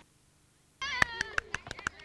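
Near silence for almost a second, then girls' high-pitched shouts and squeals break in suddenly, with several sharp knocks among them.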